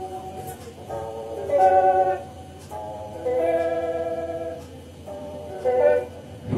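Electric guitar playing slow, sustained chords, a new chord ringing out every second or so.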